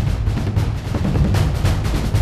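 TV show opening theme music, with a rapid run of heavy drum hits over a deep low end.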